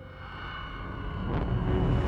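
A film sound effect of a low, jet-like rumble that swells steadily in loudness, under faint held tones from the orchestral score.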